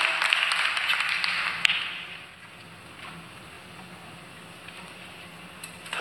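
Audience applause dying away over about the first two seconds, then a quiet theatre with a faint low hum and a few small clicks.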